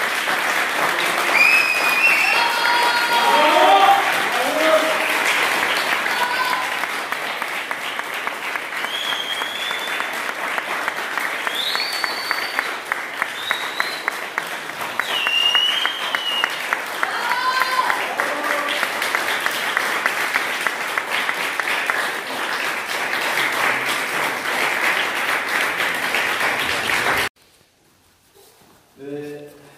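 A small group clapping steadily, with scattered voices calling out and whooping over it during the first half; the clapping cuts off suddenly near the end.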